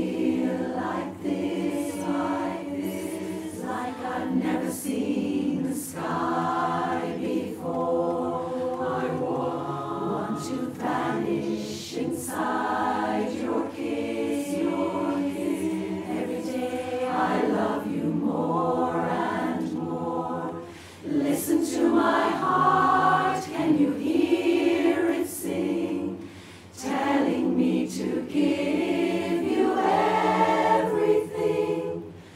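Women's barbershop chorus singing a cappella in close harmony, holding full sustained chords. The sound briefly drops away twice, about two-thirds of the way through and again a few seconds later, before the chorus comes back in full.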